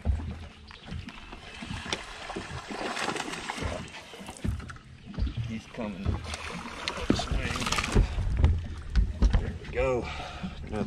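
A hooked bass being reeled in and landed from a boat deck: water splashing and handling noises, with heavier low thuds near the end as the fish comes aboard.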